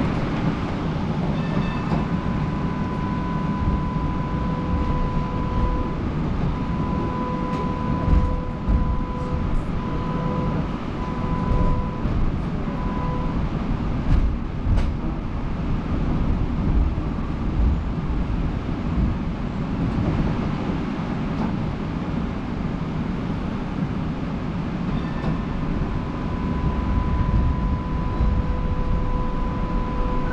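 Melbourne tram running on its street tracks: a low rolling rumble with a steady electric whine. The whine holds for about ten seconds, stops, and comes back near the end.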